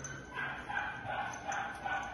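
Dog whining in a string of short, steady-pitched calls.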